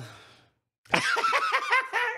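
Men laughing: a laugh trails off, the sound cuts out completely for a moment, then a run of short, repeated laughs starts about a second in.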